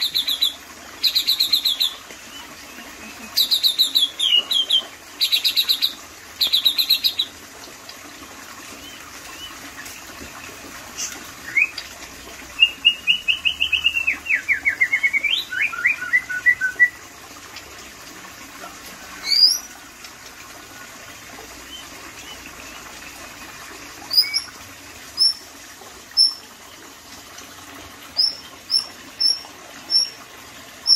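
White-rumped shama (murai batu) singing: several bursts of rapid repeated notes at the start, a fast falling trill about halfway through, then short sharp upswept whistles every second or two.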